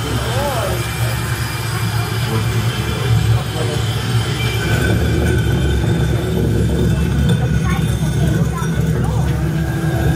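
A steady low rumble, growing a little louder over the first few seconds, with scattered voices and exclamations from a crowd of visitors over it.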